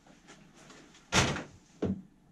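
Two brief knocks of handling on a workbench, a louder one about a second in and a shorter one near the end.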